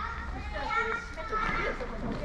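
Indistinct high-pitched voices talking in the background, with no words clear enough to make out.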